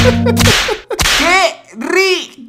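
A sharp whip-like swish as the background music cuts off about half a second in. A second swish follows about a second in, then a voice crying out 'ay' in two short, arching wails.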